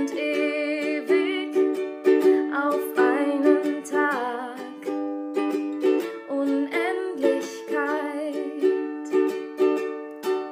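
Ukulele strumming chords in a steady rhythm, with a voice singing a wavering melody over the first half and again briefly later on.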